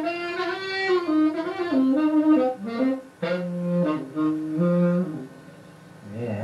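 Tenor saxophone playing a short solo phrase: a run of moving notes, a brief break about three seconds in, then long held low notes alternating with higher ones, fading out near the end.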